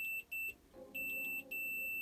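Digital multimeter's continuity tester beeping in one steady high tone as the probes touch across the bodge wire, cutting in and out: two short beeps, a pause, then a longer beep and a longer held one. The beep signals continuity: the repaired line from the multiplexer pin to the video controller is now connected.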